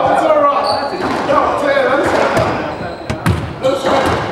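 Indistinct voices talking for the first couple of seconds, then a squash rally starting: several sharp smacks of the ball off racquet and walls in the last second or so.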